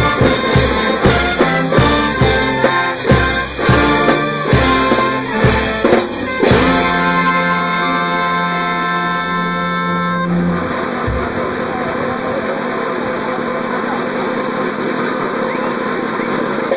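Brass band of sousaphones, trumpets and trombones with bass drum and cymbals playing to a steady beat. About six and a half seconds in it lands on a long held closing chord that cuts off about ten seconds in, leaving a steady background noise.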